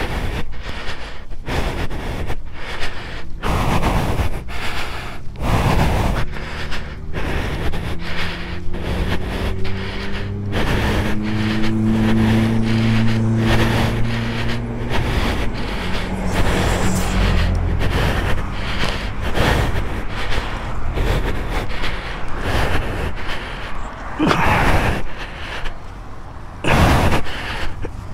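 Wind buffeting the microphone in irregular gusts as the motorcycle moves along the roadside, with road traffic passing. A heavy vehicle's engine drone swells about ten seconds in and fades by about sixteen seconds.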